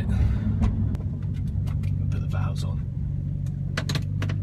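Audi R8 V8 idling while stopped at a red light, a steady low rumble heard from inside the cabin.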